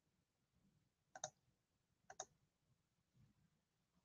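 Two pairs of quick computer-mouse clicks, about a second apart, over near silence.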